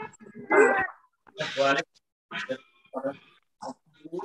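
Short, indistinct bursts of a person's voice over a video-call line, about five separate utterances with brief gaps between them.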